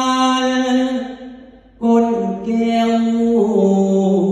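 Male likay singer's voice through a stage microphone, singing long held notes without instruments. The phrase breaks off a little after a second in, then resumes near two seconds in with the notes stepping downward.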